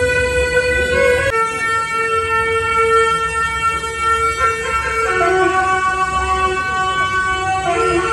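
Tibetan gyaling, a double-reed ceremonial horn, playing long held notes with a bright, horn-like tone for a welcome procession. The pitch steps down about a second in and shifts several more times, around four and five seconds in and again near the end.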